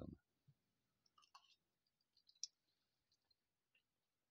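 Near silence broken by a few faint, short clicks: a small cluster about a second in, one sharper click a little later, and scattered soft ticks.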